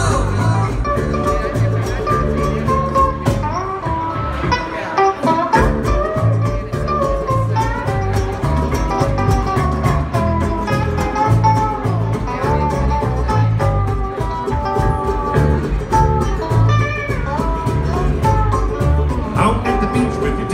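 Live band playing an instrumental break of a Hawaiian-style novelty song: ukuleles and electric bass over drums, with a lead melody that slides between notes.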